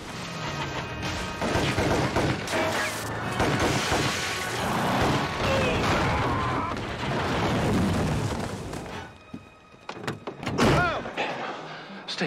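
Television drama soundtrack: a tense score mixed with action sound effects, thuds and bangs, and a few short lines of dialogue near the end.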